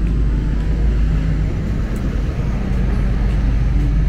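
Steady low rumble of outdoor street noise, with no distinct events standing out.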